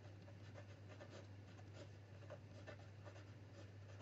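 Faint scratching of a pen writing a word on squared paper, a quick run of short strokes.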